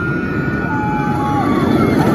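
Big Apple Coaster's steel coaster train rumbling along the track as it goes over a crest and starts down, growing steadily louder. A few thin high tones sound over the rumble.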